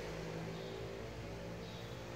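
A faint, steady engine hum, slowly fading.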